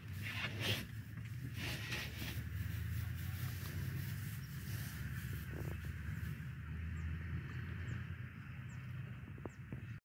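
Lions walking close past through dry grass, with soft rustling early on, over a steady low rumble. A few faint high chirps come near the end.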